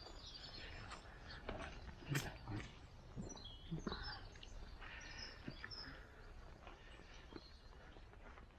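Faint outdoor ambience with distant small birds chirping, and a few soft knocks in the first half.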